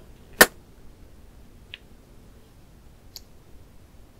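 A blown kiss: one sharp lip smack about half a second in, followed by a couple of faint clicks.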